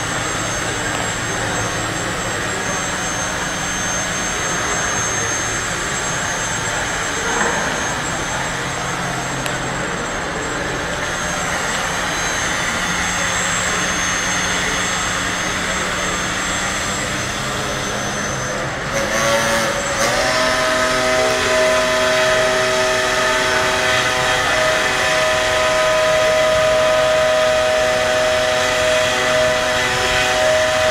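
Small hobby-built hovercraft's electric fan motors running with a steady whir. About twenty seconds in, a louder steady whine with several clear pitches sets in and holds.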